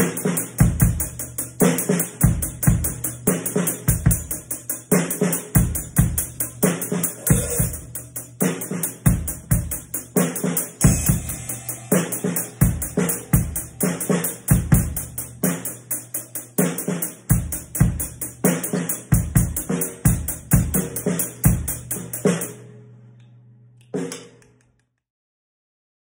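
Drum kit played in a continuous beat, with bass drum, snare and cymbal strokes over a steady cymbal wash. It stops about 22 seconds in and rings out, with one last hit about two seconds later.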